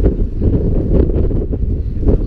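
Wind buffeting a GoPro's microphone: a loud, uneven, low rumble that rises and falls with the gusts.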